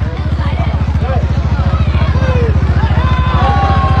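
Toyota Land Cruiser engine running hard under load as it climbs a steep sand dune, with a fast even pulsing in its low drone. A sung song plays over it, and a held high melody line comes in about three seconds in.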